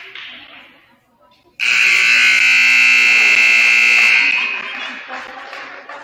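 Gym scoreboard horn sounding one loud, steady blast of about two and a half seconds as the game clock runs out to zero, signalling the end of the pregame warm-up period. It cuts in suddenly and rings on briefly in the gym after it stops, with crowd chatter around it.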